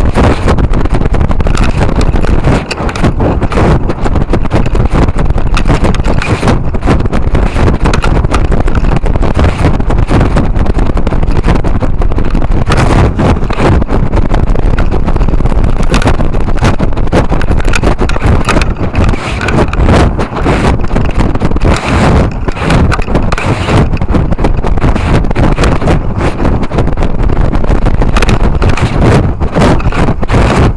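Loud, continuous wind roar and buffeting over the onboard camera microphone of a model rocket coming down from altitude, fluttering rapidly as the airframe spins.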